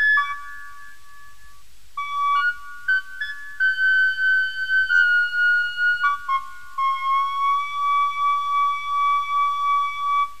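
Instrumental song intro: a single high, flute-like lead melody of held notes stepping between a few pitches, with nothing much underneath. It settles into one long held note over the last few seconds.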